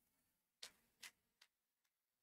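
Near silence with three faint, short clicks spaced about half a second apart.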